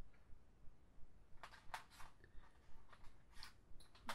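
Small scissors snipping flat plastic lanyard (scoubidou) strings: several faint, sharp snips, the clearest between about one and a half and two seconds in.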